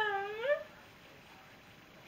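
A woman's tearful, whimpering voice drawing out the end of a word, dipping and rising in pitch before breaking off about half a second in. Then only faint room tone.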